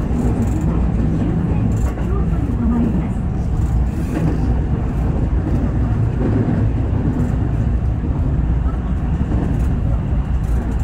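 JR West 221 series electric train running at speed, heard from inside the front car: a steady low rumble of wheels on rail and traction motors.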